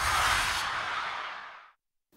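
Tail of a TV show's logo-sting sound effect: a noisy whoosh with a low rumble under it, dying away shortly before the end.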